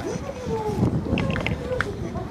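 People talking nearby, the words unclear, over a low outdoor rumble.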